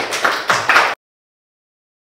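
Small audience applauding with handclaps. The applause cuts off suddenly about a second in.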